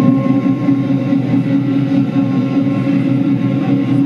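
Chinese lion dance percussion: a loud, rapid, unbroken drum roll with metal percussion ringing above it, the roll that accompanies the lion waking and rising.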